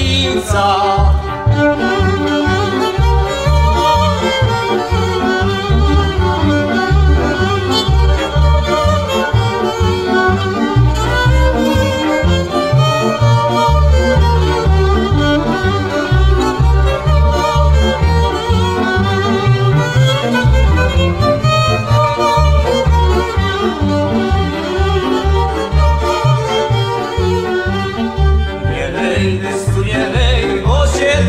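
Instrumental passage of traditional Beskid highland folk music: a fiddle leads over a bowed bass that keeps a steady pulsing rhythm.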